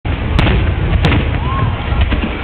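Large aerial firework shells bursting overhead: a continuous low rumble of explosions, with two sharp cracks about half a second and a second in.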